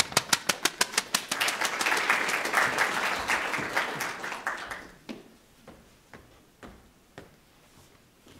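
Audience applauding: a short round of clapping that dies away after about five seconds, leaving a few scattered claps.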